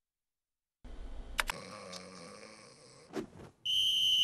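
Dead silence for most of a second, then a faint soundtrack with a couple of sharp clicks, and near the end a loud, steady, high-pitched referee's whistle blast lasting under a second.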